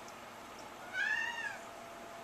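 A Siamese cat gives one short meow about a second in, its pitch rising and then falling.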